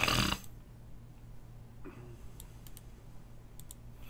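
A handful of sharp computer mouse clicks in the second half, some in quick pairs, as text is selected and copied on screen, over a low steady hum. A short puff of noise comes right at the start.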